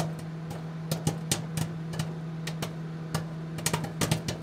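A steady low hum with many irregular, sharp clicks and knocks over it.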